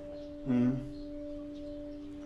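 Singing bowl ringing with a few steady, held tones. A voice asks a short question about half a second in.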